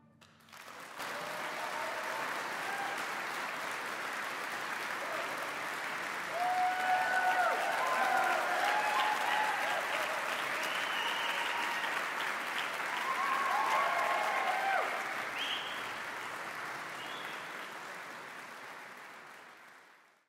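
Concert audience applauding, starting about a second in, with cheering voices rising over the clapping in the middle; the applause fades out toward the end.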